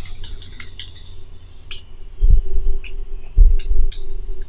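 Handheld gimbal grip and phone holder being handled and screwed together: scattered small clicks and ticks, with two dull thumps about two and three and a half seconds in.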